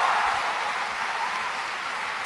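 Large auditorium audience applauding, the applause slowly dying away.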